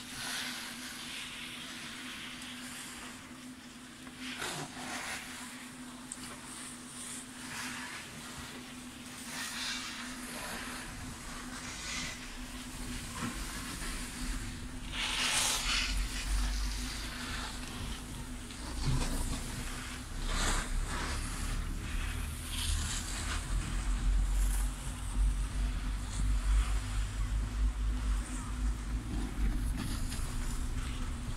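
Chairlift ride: a steady low hum from the lift, broken by occasional short rattles and clicks, with one louder rattle about halfway through. A deep rumble comes in during the second half and grows as the chair nears the lift station.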